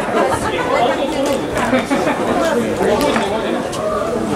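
Indistinct chatter of several overlapping voices, echoing in a large hall.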